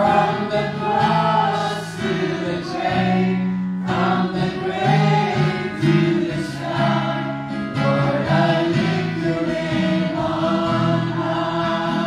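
Several voices singing a gospel worship song together in long held notes, with musical accompaniment.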